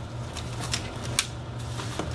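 Cardboard shipping box being opened by hand: flaps and packing inside rustling and scraping, with scattered light clicks and one sharper click about a second in.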